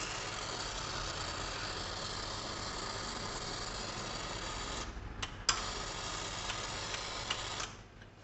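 Hot water running from a Wega espresso machine's hot-water outlet into a cup of espresso: a steady hiss with a low hum beneath it. It drops out briefly about five seconds in, with a couple of clicks, then runs again and stops just before the end.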